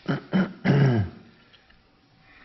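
A person clearing their throat: three short bursts within the first second, the last one the longest.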